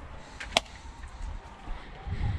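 A single sharp knock about half a second in, over a low steady rumble.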